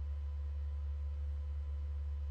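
A steady low electrical hum with faint thin steady tones above it, and no other sound.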